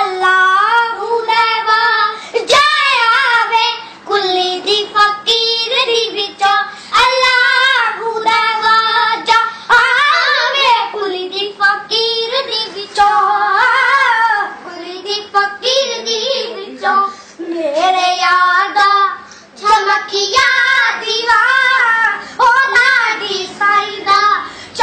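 Two young girls singing a Punjabi song together, unaccompanied, in phrases broken by short breaths.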